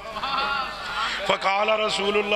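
A man's amplified voice in a quavering, wavering cry as he chants religious recitation.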